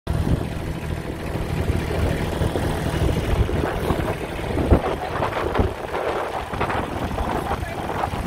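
Kubota compact tractor's diesel engine idling steadily, with a single sharp thump about halfway through.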